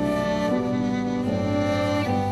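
Small instrumental ensemble of two violins, flute, acoustic guitar and electric bass playing a slow piece in long held notes, with a low bass note coming in just past halfway.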